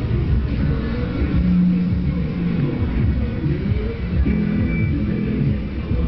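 Live band music from a festival stage's PA, heard from well back in the crowd area: muffled and bass-heavy.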